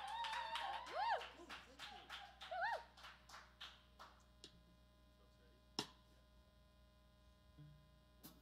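A few people clapping and whooping. The claps thin out after about four seconds, and there is one sharp knock near six seconds.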